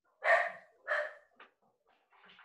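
A dog barking twice in quick succession, about half a second apart, heard over a video-call microphone.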